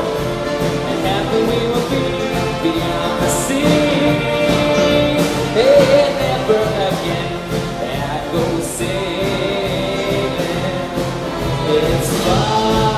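Large school vocal group and band performing live: many voices singing together over saxophones, trumpets, strings and a rhythm section, at a steady full level.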